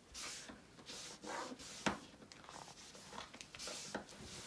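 Soft rubbing as spilled craft glue is wiped up, in several short strokes, with one sharp click about two seconds in.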